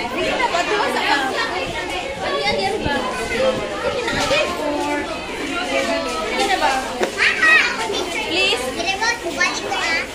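A crowd of young children and adults chattering and calling out over one another, no single voice clear, with louder high-pitched children's voices about seven seconds in.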